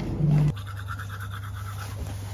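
A brief closed-mouth "mm" hum, then from about half a second in a manual toothbrush scrubbing teeth in quick back-and-forth strokes, about seven a second, over a steady low hum.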